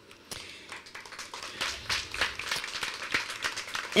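Audience clapping, scattered at first and growing denser after about a second and a half.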